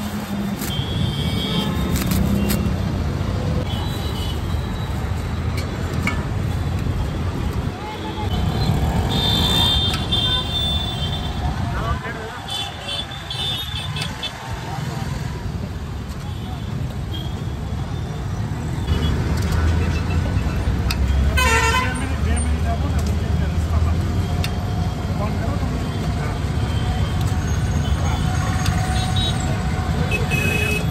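Busy street traffic: a steady engine rumble with vehicle horns honking several times, around a third of the way in and again just past the middle.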